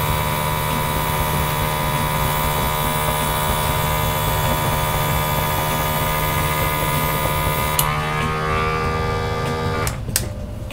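Small airbrush compressor running with the hiss of an airbrush spraying ink. About eight seconds in, the hiss stops with a click and the motor's tone changes, and the compressor cuts off near the end.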